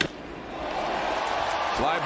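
Crack of the bat as a baseball is hit hard, a single sharp strike, followed by stadium crowd noise swelling as the ball flies deep to the outfield. A play-by-play commentator's voice comes in near the end.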